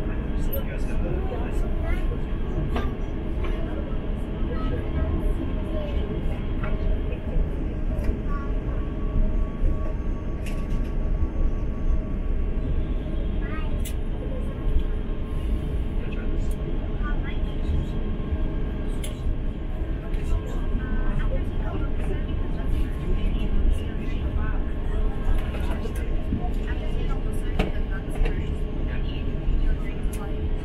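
Steady low rumble inside an Airbus A350 passenger cabin as the airliner taxis, with engine and air-conditioning noise and faint murmuring voices.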